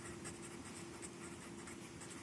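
Faint scratching of a felt-tip marker writing on paper, over a steady low hum.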